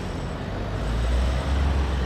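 A car driving past at close range on a city street, a deep engine and tyre rumble swelling from about half a second in, over a steady wash of traffic noise.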